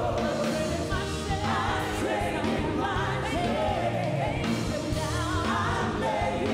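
Live gospel worship music: a woman singing lead into a microphone, with sustained, wavering notes over a steadily playing band.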